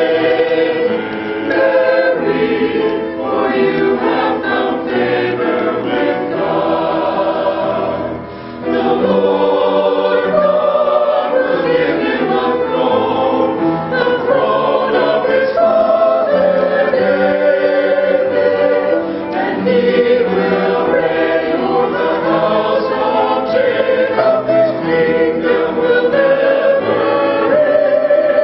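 Mixed choir of men's and women's voices singing a choral piece, several parts sounding together, with a brief drop in sound about eight seconds in.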